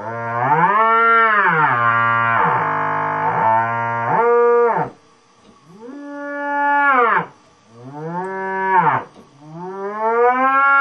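Korg MS-10 monophonic analog synthesizer holding a buzzy note while its pitch bend sweeps the pitch up about an octave and back down, again and again, with short breaks between notes. The pitch bend is working.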